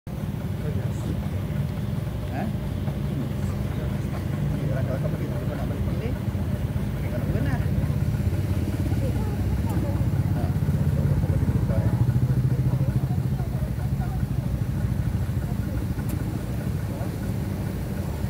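Small boat's outboard motor running steadily, a little louder around the middle, with faint voices.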